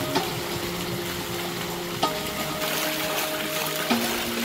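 Water pouring from a bamboo pipe onto a wooden water wheel and splashing into a pool, a steady rush. Under it, background music holds sustained chords that change about every two seconds.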